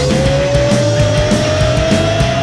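Live rock band playing electric guitar, bass and drums. One long held electric guitar note bends up at the start and then creeps slowly higher in pitch, riding over the band.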